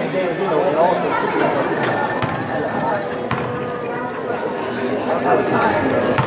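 Indistinct voices and chatter echoing in a gymnasium, with a single sharp knock about three seconds in.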